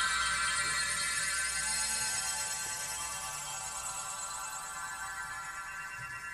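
Electronic New Age music from a synthesizer: a held, high chord of many steady tones that slowly fades away.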